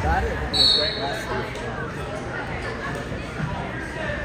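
Referee's whistle blown once, a short steady blast about half a second in, restarting the wrestling bout, over the chatter of spectators in a gym. A low thump is heard at the start.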